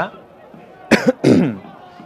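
A cough in two quick bursts about a second in, the second one longer with a falling pitch.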